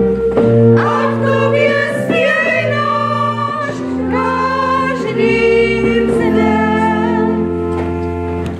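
Church pipe organ played in sustained chords that change every few seconds, accompanying a group of voices singing.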